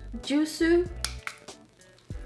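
A woman's voice briefly, then a few light clicks from handling a small bottle, over background music.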